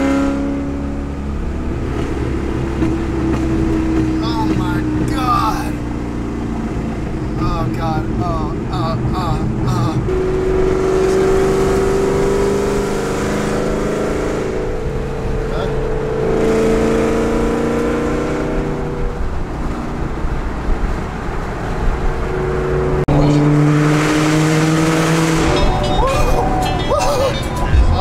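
Ford Mustang SVT Cobra's V8 engine heard from inside the cabin while driving, its note rising in pitch as it pulls and then dropping, with a sudden step down in pitch near the end.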